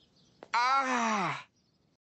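A man's voice groaning a single drawn-out "ohh" that falls in pitch, lasting about a second, with a short click just before it.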